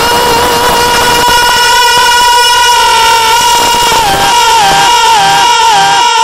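A male naat singer holding one long, high sung note into a microphone for about four seconds, then breaking into wavering melodic turns around the same pitch.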